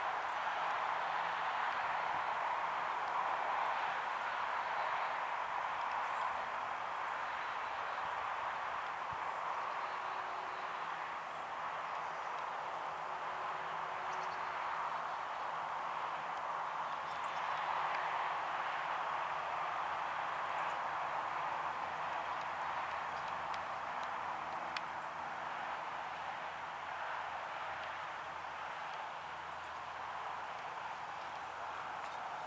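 Steady background noise with no rocket motor or engine sound, and a few faint, short high chirps scattered through it.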